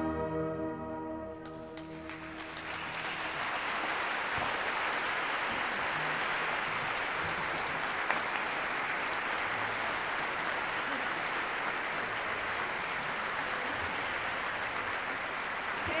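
The last orchestral chord fades out over the first second or so, and from about two seconds in the audience applauds, a dense, steady clapping that keeps going.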